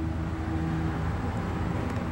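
A low, steady engine drone from an unseen motor, fading over the two seconds.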